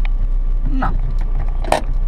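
Small car's engine idling, heard from inside the cabin as a steady low hum, with one sharp click near the end.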